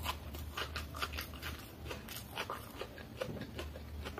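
Close-miked mouth sounds of a man eating chow mein noodles: chewing, with a quick, irregular run of sharp clicks and smacks, over a low steady hum.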